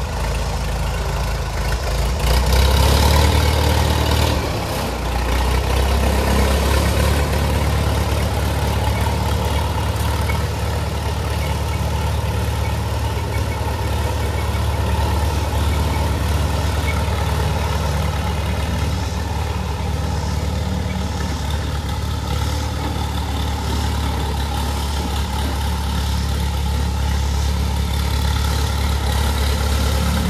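Vintage row-crop tractor engine running, revving up louder about two to four seconds in, then running steadily as the tractor drives off.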